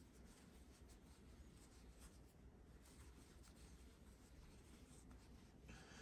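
Near silence, with the faint scratch and rub of yarn drawn over a metal crochet hook as stitches are worked.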